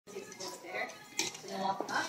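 Light metallic clinking, with a sharp click a little past halfway and a few smaller ticks near the end, over soft talking.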